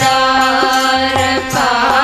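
Devotional hymn singing: a wavering sung melody over a steady held drone note, kept in time by regular hand claps.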